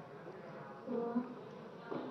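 Low background noise of a hearing room, with a brief, faint voice sound about a second in and a short knock near the end.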